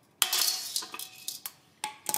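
A bronze helmet knocking and scraping on a steel ball stake. There is a sharp metal knock shortly after the start, then a faintly ringing scrape and a few smaller clinks, and another knock near the end.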